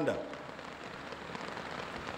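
Steady rain falling, an even hiss with no distinct drops.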